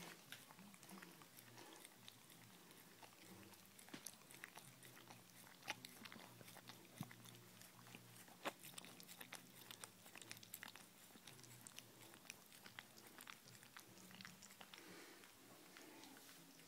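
Husky gnawing on a bone held between its paws: faint, irregular clicks and crunches of teeth on bone, coming every second or so.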